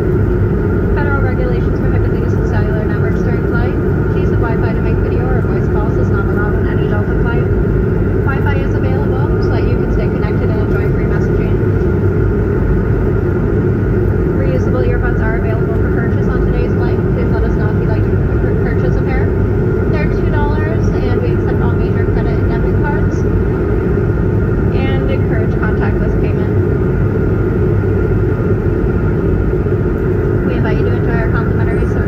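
Steady, loud cabin noise of a jet airliner in flight: the even rush of engines and airflow with a constant hum. Faint, indistinct passenger voices come and go throughout.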